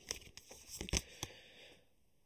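A deck of oracle cards being shuffled by hand: papery rustling with a few short, sharp card snaps, stopping near the end.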